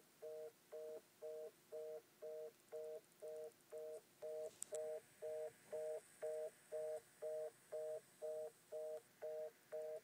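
Landline telephone's fast busy (reorder) tone from the handset: two tones sounding together, pulsing on and off about twice a second, with one small click about halfway through.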